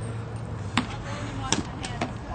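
A heavy bag being slammed down onto asphalt: three sharp thuds, the loudest about one and a half seconds in, over a steady low hum.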